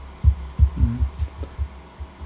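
A series of soft, low thuds at an uneven pace, roughly four a second, over a steady low hum, with a brief faint voice sound near the middle.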